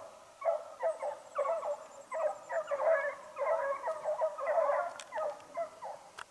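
A pack of fox hounds baying in chase, many overlapping yelping calls with no break, the sound of the dogs giving tongue as they run a fox.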